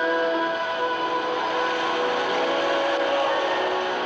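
Soundtrack music with long held tones under a loud, steady rushing noise that swells in the middle and eases near the end.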